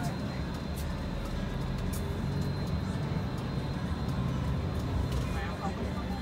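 Coach bus engine and road noise heard from inside the passenger cabin while driving: a steady low hum.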